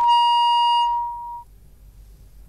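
A single steady telephone-line beep, one high tone held for about a second and a half that cuts off abruptly: the sign of the caller's phone connection dropping.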